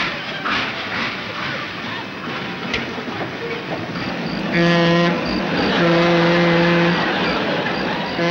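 Cartoon express-train sound effect: the rushing chug of a locomotive, with two blasts of a low train horn around the middle, the second about a second long.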